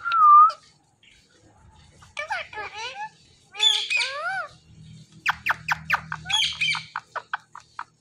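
Indian ringneck parakeet calls: a short whistle at the start, squawks around two and four seconds in, then a fast run of clicking chatter a little past the middle.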